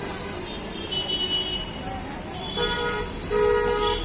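A vehicle horn honks twice near the end, each toot under a second long. Underneath runs the steady hiss of batter frying in a wide pan of hot oil.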